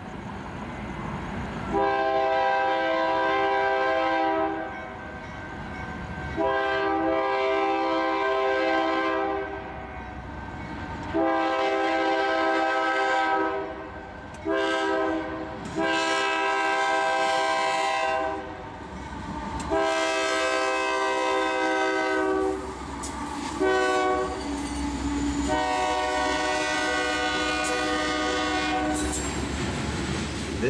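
Union Pacific diesel locomotive's air horn blowing a series of about eight blasts, mostly long with a few short ones, as the grain train approaches the grade crossings. Between blasts there is a low rumble from the train, growing as it nears and the hopper cars pass.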